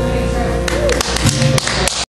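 Acoustic guitar's final chord ringing out after the last strum, then scattered handclaps starting about two-thirds of a second in.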